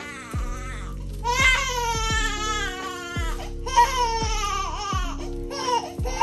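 Newborn baby crying hard in two long wailing spells, the first starting about a second in and the second just after the middle. Background music with deep bass hits plays underneath.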